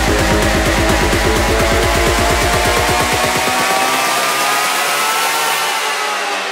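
Electro house track: the fast pulsing bass thins out and drops away over the first four seconds while synth tones glide steadily upward in pitch, a build-up into the next section.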